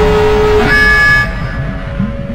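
A loud, held horn-like trailer blast over a low rumble, cutting off about a second in and leaving the rumble going.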